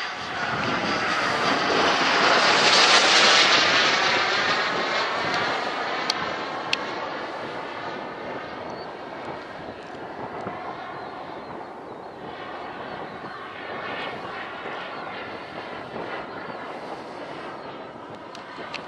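Turbine engine of a radio-controlled model F-16 jet making a pass: its jet noise swells to its loudest about three seconds in, then fades as the jet flies off and carries on at a distance.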